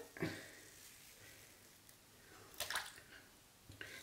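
Faint scrape of a 3D-printed plastic single-edge razor cutting two days' stubble, with one short stroke about two-thirds of the way in.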